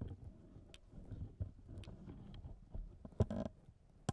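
Handling noise from squeezing the flexible legs of a small Ulanzi MT-33 tripod on which a Zoom H1n recorder is mounted: faint creaks and small clicks carried straight into the recorder's mics, with a louder cluster about three seconds in.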